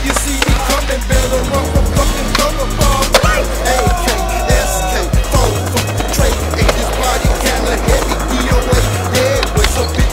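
Hip-hop backing track with a heavy bass line, with skateboard sounds mixed over it: wheels rolling on pavement and the clacks of the board on tricks and landings.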